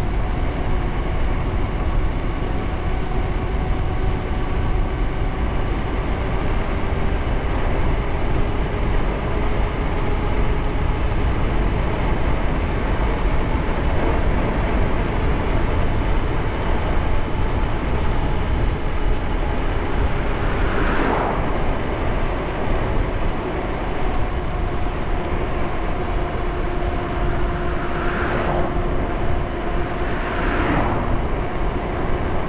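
Lyric Graffiti electric bike cruising at around 30 mph: wind rushing over the microphone and tyre noise, with a steady electric-motor whine. Short swells of noise come twice in the second half.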